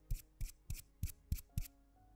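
Short brush strokes of a paintbrush on a small sculpture, about three dabs a second, six in all.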